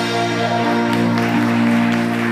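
Live worship band sustaining a held chord, with saxophone, electric guitar and bass ringing steadily over a fading cymbal wash.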